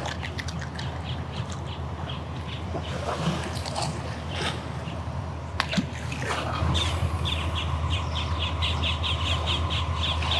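Birds calling, ending in a fast run of short, evenly repeated high calls over a low steady rumble.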